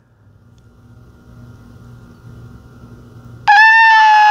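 Low room hum, then near the end a man's loud, high-pitched falsetto squeal starts suddenly and is held at a nearly steady pitch.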